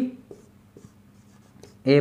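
Marker pen writing on a whiteboard: a few faint scratches and taps of the tip in a pause between a man's words, which are the loudest sound at the start and near the end.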